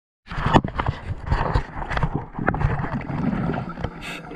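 Underwater noise on a scuba diver's camera: irregular clicks and knocks over a low rumble, with short bursts of bubbling.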